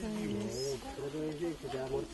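A person's voice talking, with some syllables drawn out and held.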